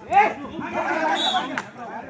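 Several voices shouting and chattering over one another, players and spectators at a kabaddi match, loudest about a quarter second in.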